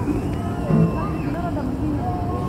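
People talking quietly over a steady low rumble of background road traffic.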